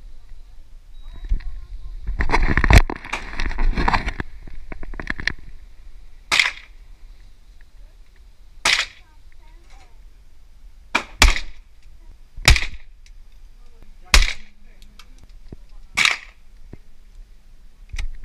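Gunshots from a carbine in an indoor shooting range: a dense run of cracks and clatter between about two and four seconds in, then seven single shots about one to two seconds apart, each with a short ring-off from the hall.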